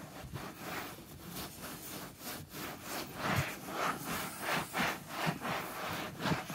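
Terry cloth with WD-40 rubbed back and forth over a car seat cover to wipe off wax china-marker lines: a soft rubbing swish in uneven strokes.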